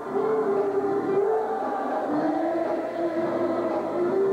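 Gospel church music with long held notes; the pitch steps down about two seconds in and rises again near the end.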